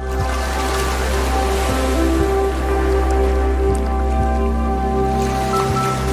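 Intro music of held synth tones over a steady deep bass, with water sound effects of drips and a splash.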